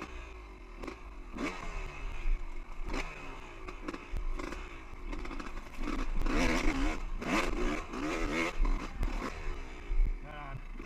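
Two-stroke dirt bike engine revving up and falling back again and again as the rider blips the throttle over rocky single track, with knocks and clatter from rocks and the chassis. The engine is revved hardest for a few seconds past the middle.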